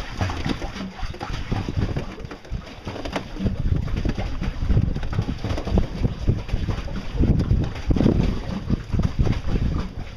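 Water sloshing and splashing around a board floating on the water, with wind rumbling on the microphone.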